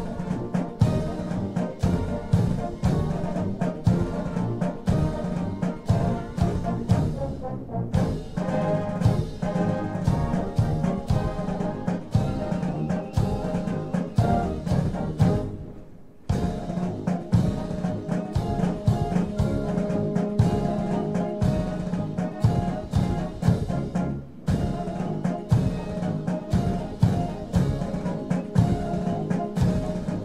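Military brass band playing a parade march, brass over a steady drumbeat, with brief breaks between phrases.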